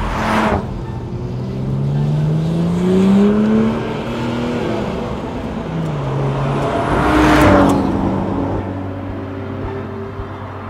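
Morgan Plus Six's turbocharged BMW straight-six engine rising in pitch as it accelerates, dropping back around six seconds in and climbing again. A brief rush of passing noise comes right at the start, and a louder one peaks about seven and a half seconds in as the car goes by.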